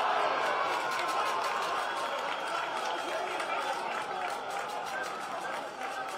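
A Spanish-language TV football commentator's long, drawn-out goal cry as the ball goes into the net, over stadium crowd noise.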